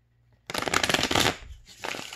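A deck of tarot cards being riffle-shuffled: a fast flutter of cards starts about half a second in and lasts about a second. Softer rustling follows, then a second short flutter near the end.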